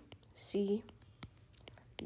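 A woman's voice briefly saying the letter "c", with a few faint taps of a stylus writing on a tablet's glass screen.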